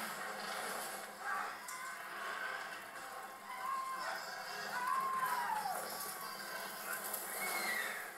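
Battle-scene film soundtrack played back in a room: music mixed with voices, with a few drawn-out cries rising and falling in pitch. It cuts off suddenly at the very end.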